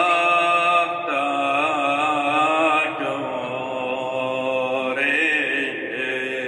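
Assyro-Chaldean liturgical chant in Aramaic, sung as a slow melody of long held, ornamented notes that change pitch every second or two.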